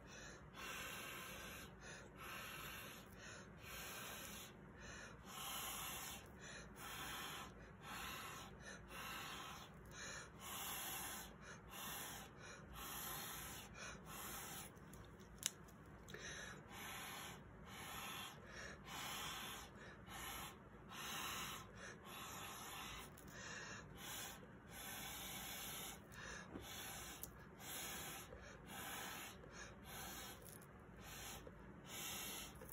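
Short puffs of breath blown through a clear plastic tube onto wet acrylic pour paint, one after another at about one a second, with a single sharp click about halfway through.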